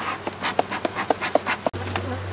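Bee smoker's bellows pumped in quick puffs over open hive frames, about four puffs a second, to drive the bees down before the boxes are closed. The sound cuts off abruptly near the end.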